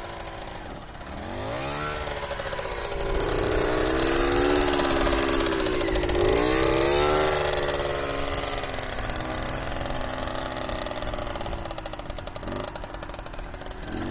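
Fantic trials motorcycle engine revving under a rider on the move: its pitch dips and climbs several times, then settles into a lower, steadier run for the last few seconds.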